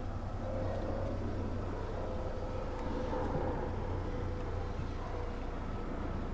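Steady low engine rumble with a faint steady whine above it, even throughout.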